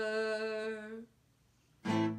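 A girl's sung note held steady and fading out about a second in. After a brief silence, a guitar chord is strummed near the end.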